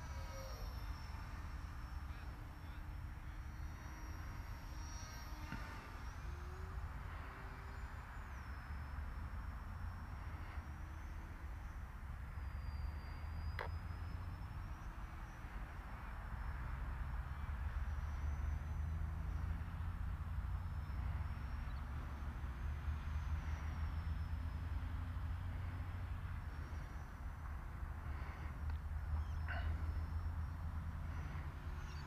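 Wind noise on the microphone, stronger in the second half, with the faint high whine of a ZOHD Drift RC plane's electric motor and propeller overhead, wavering up and down in pitch. A single sharp click about halfway through.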